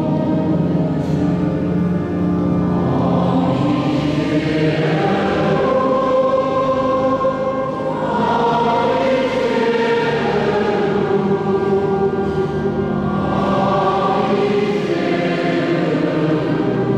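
A choir and congregation singing a slow liturgical hymn together, holding long notes, with the long reverberation of a large stone cathedral.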